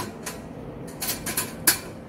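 A stainless wire basket loaded with glass flasks and bottles settling into an autoclave chamber: a few light metal-and-glass clinks and rattles, the sharpest one near the end.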